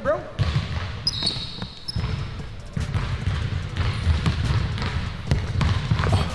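Basketball being dribbled on an indoor gym's hardwood court, a run of low bounces, with a few brief high squeaks about a second in.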